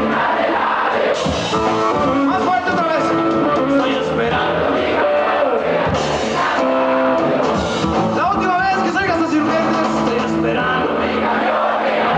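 Live rock band playing: electric guitars, bass guitar and drum kit.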